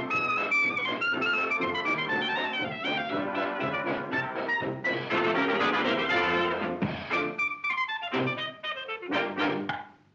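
Early sound-cartoon jazz band music led by trumpet and other brass, playing a quick run of notes. About seven seconds in it breaks into short, separated staccato hits, which stop just before the end.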